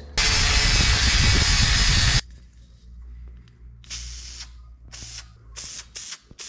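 Angle grinder grinding burrs off a cut steel floor track for about two seconds, then stopping abruptly. Then an aerosol spray-paint can hissing in three short bursts.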